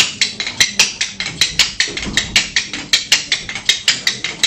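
Kuaiban bamboo clappers played solo: a quick, uneven rhythm of sharp wooden clacks, about five or six a second. This is the instrumental clapper opening that precedes the recited story.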